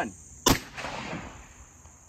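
AEA Zeus big-bore PCP air rifle with a .45-calibre barrel firing a single 200-grain hollow-point slug: one sharp report about half a second in, trailing off over about a second. Crickets chirp steadily behind it.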